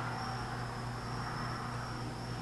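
Steady background noise: a constant low hum with a thin, continuous high-pitched whine over it.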